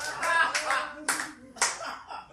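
A few scattered hand claps, the two loudest about a second and a second and a half in, with voices underneath early on.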